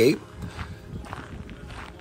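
Faint footsteps on gravel and dirt ground as someone walks, after a spoken word trails off at the start.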